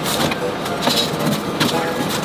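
Baking soda poured from a plastic bag into a stainless steel sink, the powder running out onto the steel with the bag crinkling in the hand.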